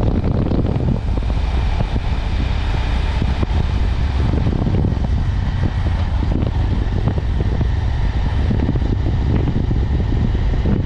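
Steady rumble of a motorcycle riding along a road: engine and road noise, with wind buffeting the camera microphone.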